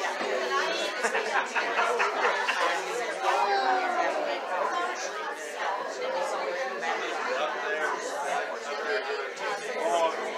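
Indistinct chatter of several people talking at once, overlapping conversations with no single clear voice.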